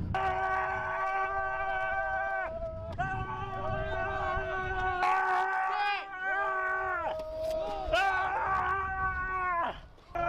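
Several Marines yelling long, drawn-out war cries together in bayonet assault training, several pitches held at once. Each yell is held for two to three seconds and falls away at its end, with short breaks between them.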